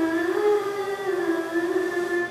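A woman singing long held notes that glide slowly up and down in pitch, without breaks for words.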